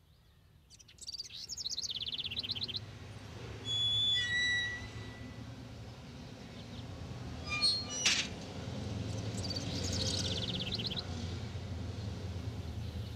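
Small birds chirping and trilling: a rapid high trill about a second in and again near the end, and a few clear whistled notes around four seconds. A short sharp sound comes about eight seconds in, and a steady low hum runs underneath.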